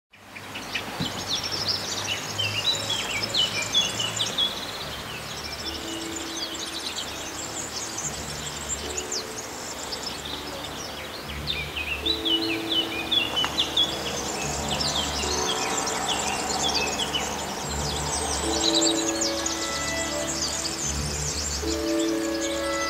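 Small birds chirping and singing in repeated short phrases, heaviest near the start and again in the second half, over soft background music of held low notes.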